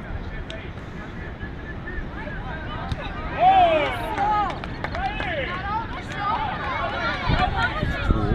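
Several people shouting and calling out over one another across the court. The calls grow loud about three and a half seconds in, and overlapping shouts run on after.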